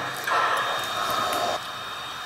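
Steam hiss from a sound-equipped O scale model steam locomotive standing still: a louder hiss for about a second near the start, then a steady fainter hiss.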